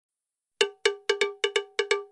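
Intro sting of struck metallic percussion: eight quick, ringing hits at one pitch in a syncopated rhythm, starting about half a second in.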